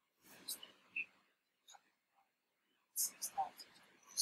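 Faint whispered speech in a few short bursts, louder about three seconds in.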